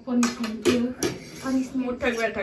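Forks and spoons clinking and scraping on dinner plates as people eat, with several short sharp clinks, under a woman talking.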